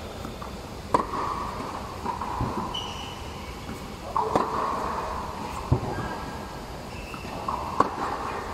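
Tennis balls being hit with a racket during a ball-machine drill: four sharp pops a second or more apart, each echoing.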